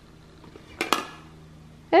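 Two sharp plastic clicks from a VTech pop-up train toy as its pop-up pieces are pressed, about a second in.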